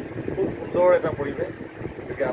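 A man talking, with wind rumbling on the microphone underneath.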